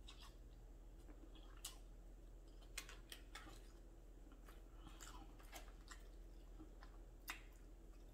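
Faint close-up chewing of chicken lo mein noodles, with a few soft, scattered clicks.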